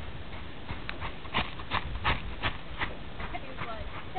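Hooves of a young Friesian–paint cross horse striking the ground in a steady rhythm of about three beats a second as it moves, fading into a few lighter steps near the end.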